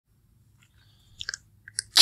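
Near silence, then a few faint, brief mouth clicks and lip smacks in the second half, just before the narrator starts speaking.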